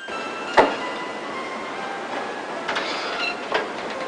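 A single sharp knock about half a second in, then a steady noisy hiss with a few light clicks near the end and faint held music tones underneath.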